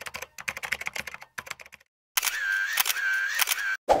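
A typewriter-style clicking sound effect: a rapid run of sharp key clicks for about a second and a half as text is typed out. After a short pause comes a second, steadier stretch of sound with a faint tone and more clicks.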